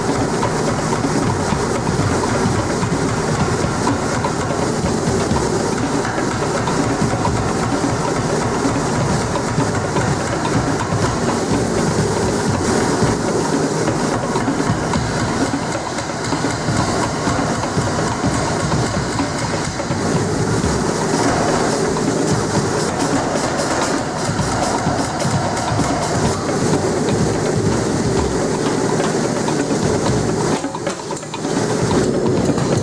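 Power hammer striking a red-hot steel bar in a rapid, continuous run of blows as the bar is forged to an octagonal section.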